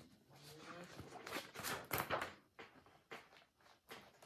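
Rustling and crinkling of a shiny plastic project bag being handled: a quick, irregular string of crackles.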